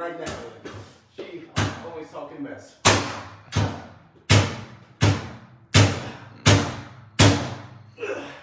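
A pry bar jabbed again and again into the door of an ATM cabinet, trying to force it open: a run of about eight sharp bangs, one every two-thirds of a second or so, each ringing briefly.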